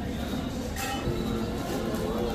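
Ambience of a busy indoor shop: a steady low rumble with a murmur of shoppers and faint background music, and a brief hiss about a second in.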